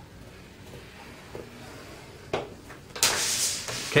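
A sheet of cardstock being handled and slid around on a grooved plastic scoring board. There is a soft knock a little past halfway, then a short sliding swish of paper across the board near the end.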